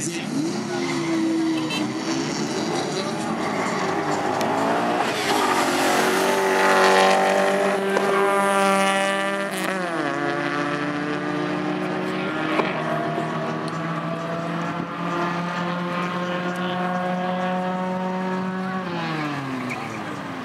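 Cars launching off a drag-strip start line and accelerating hard down the quarter mile. The engine note climbs steadily in pitch and is loudest about seven seconds in. It drops sharply at a gear change near the middle, then holds and climbs again until a final drop near the end.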